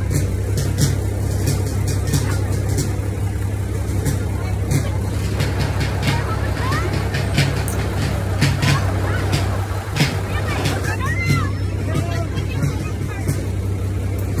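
Engine of a slow-moving parade vehicle running steadily, a deep even hum heard from on board, with voices and music around it.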